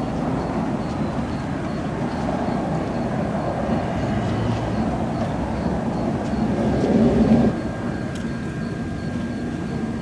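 Steady low outdoor rumble that swells about seven seconds in, then drops back.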